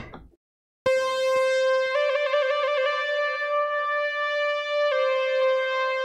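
Korg opsix FM synthesizer playing its 'Mod Saw Lead' factory preset: a classic, effects-heavy lead note, rich in overtones, that starts about a second in and is held. The pitch steps up a little about two seconds in and drops back near five seconds.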